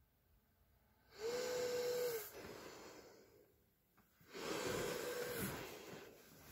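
Home bilevel ventilator in ST mode blowing air through a full-face mask: two machine-assisted breaths about three seconds apart. Each is a rush of air with a steady whine for about a second, then tails off as the pressure drops back.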